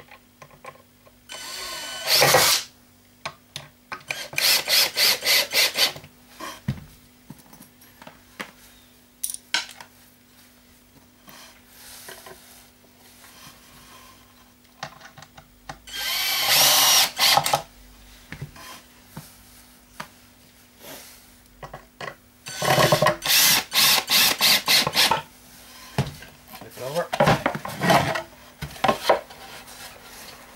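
Cordless drill driving screws into a wooden board in five short bursts. Two of the bursts break into a rapid, even pulsing.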